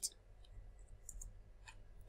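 A few faint, sharp clicks from a computer keyboard and mouse as a number is typed into a field, over quiet room tone.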